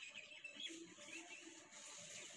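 Near silence, with faint, short bird chirps in the background.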